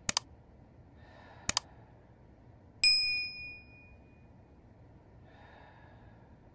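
Subscribe-button animation sound effect: a quick double mouse click, another double click about a second and a half in, then a bright notification bell ding near the three-second mark that rings out for about a second.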